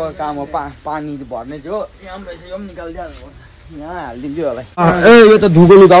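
A person talking, quieter in the middle. About five seconds in, the voice grows louder over a steady hiss.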